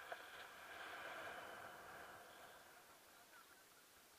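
Near silence: a faint airy hiss that swells about a second in and then fades.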